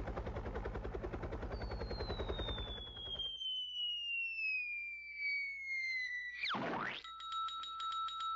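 Radio sound effects for a helicopter drop: a helicopter's rotor chopping for about three seconds, overlapped by a long falling whistle as of something dropping. About six and a half seconds in comes a short sharp hit, then a steady ringing tone with even ticks.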